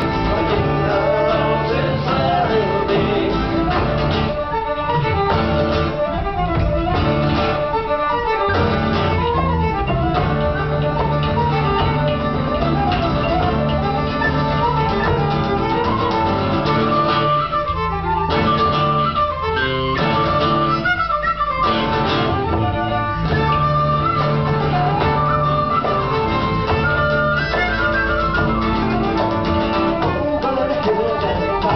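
Live folk band playing an instrumental passage: bowed fiddle melody over strummed acoustic guitar and electric bass.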